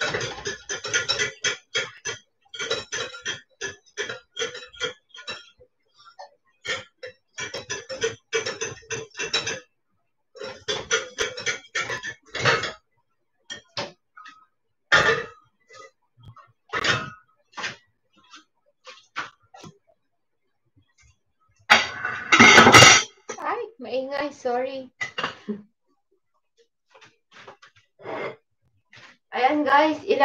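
Metal whisk beating hollandaise sauce in a glass bowl over a pot of hot water: a quick run of clinking strokes against the glass for about twelve seconds, then scattered clinks. A little after twenty seconds comes one louder clatter of the bowl against the pot.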